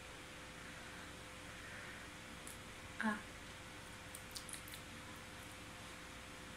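Faint chewing of a bite of roasted potato taken off metal tongs, with a brief vocal sound from the taster about three seconds in and a few small mouth clicks a second later, over a steady faint hum.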